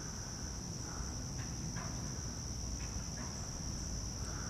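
Steady chorus of insects, a continuous high-pitched trill, over a faint low rumble.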